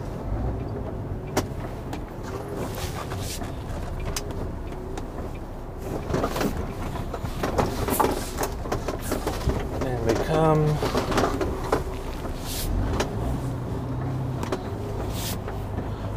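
A heavy goods vehicle's diesel engine running at low speed, heard from inside the cab as the lorry manoeuvres slowly, with a few scattered clicks and knocks.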